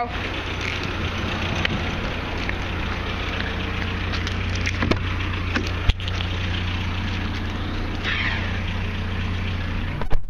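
A 1997 Chevrolet S10 pickup's engine idling steadily under a constant crackling rustle, with a few sharp clicks about five to six seconds in.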